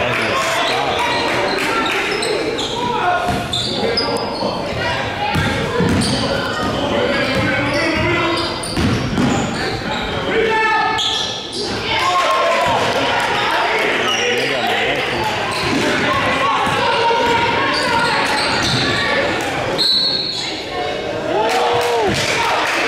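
Basketball being dribbled on a gym floor, with scattered voices of players and spectators echoing in the hall.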